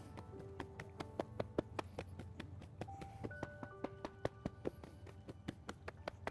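Cupped hands slapping down the legs in quick, uneven light slaps, about four or five a second, over soft background music of held notes.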